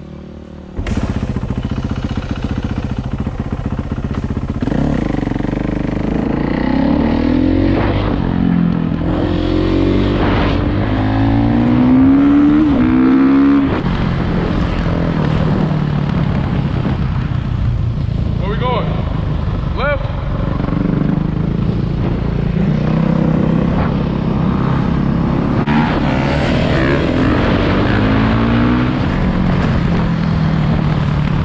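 Kawasaki KX450 four-stroke dirt bike and other dirt bikes running and revving on the street, loud, the engine pitch rising and falling again and again as the riders work the throttle. The sound jumps suddenly louder about a second in.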